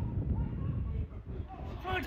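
Faint, distant voices from the football pitch over a low outdoor rumble, a lull between the close shouts of the spectators.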